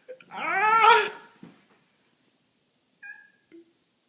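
A toddler's high-pitched squeal: one call that rises and falls in pitch over about a second. A short, faint high tone follows about three seconds in.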